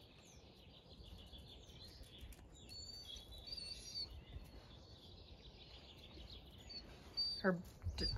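Faint chirping of small songbirds, in short high calls a few seconds in and again near the end, over a low steady outdoor rumble. A woman's voice starts just before the end.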